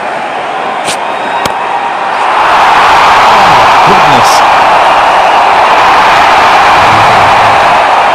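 Stadium crowd at a cricket match cheering. The roar swells about two seconds in and holds loud, greeting a big hit that clears the boundary. Two short clicks come just before the swell.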